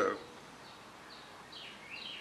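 Faint bird chirps, a few short high calls, over a quiet background hiss, with the end of a spoken word right at the start.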